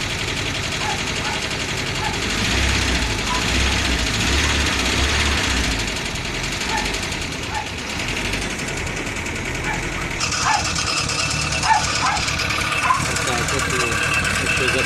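Nysa 522 van engine running through a new homemade muffler that replaced a burned-through one, heard by the engine cover inside the cab; it runs quieter than before, as the owner says. A deeper, louder rumble comes between about two and five seconds in, and about ten seconds in the sound changes as the microphone moves down toward the exhaust pipe.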